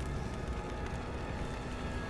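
The episode's soundtrack playing quietly: a low steady rumble with faint sustained tones.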